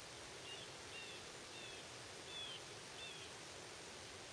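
A bird calling five times, short high calls a little over half a second apart, over a steady faint hiss.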